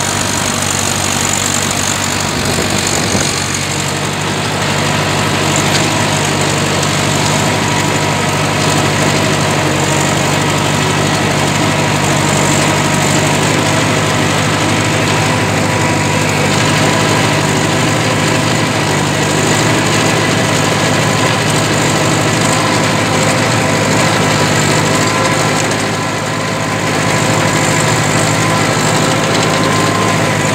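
Ursus C-360's three-cylinder diesel engine running steadily under load while pulling a plough through the field, heard from the driver's seat. The level dips briefly near the end.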